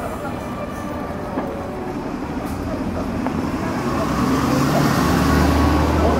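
A motor vehicle approaching and passing close by, its low engine hum and tyre noise growing steadily louder and loudest near the end.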